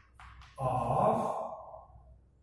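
A man's drawn-out voiced sound like a sigh, lasting a little over a second, with a short scratch of chalk on a blackboard just before it.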